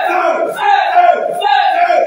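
Several voices shouting in loud, repeated cries, each falling in pitch, about three in two seconds: fervent shouted prayer over a person being delivered.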